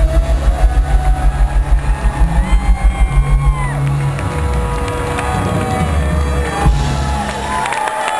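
Live band playing the closing section of a song through a hall PA: a fast pulsing bass beat for the first few seconds, then a held final chord that stops just before the end. The audience cheers and whoops over it.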